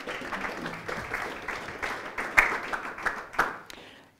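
Audience applauding, many hands clapping, dying away near the end.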